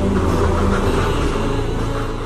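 A loud low rumble with a rushing noise over it, a cinematic logo-reveal sound effect laid over the tail of the background music.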